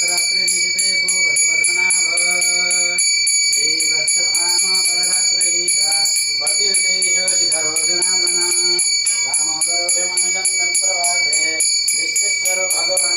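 A puja hand bell rung continuously at about four strokes a second, its ringing steady and high. Under it, a voice chants in long held notes.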